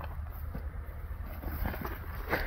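Weeds being pulled up by hand, a faint rustling and tearing of stems and leaves, over a steady low rumble.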